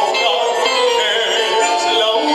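A man singing a tango into a microphone over musical accompaniment, holding long notes.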